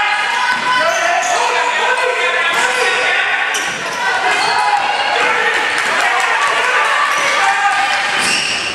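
Basketball game sounds on a hardwood court: the ball bouncing, short high-pitched squeaks of shoes on the floor, and players and spectators calling out.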